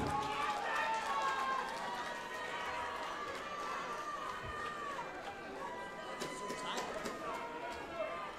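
Faint, indistinct voices from the audience and corner teams, with nobody speaking close to the microphone.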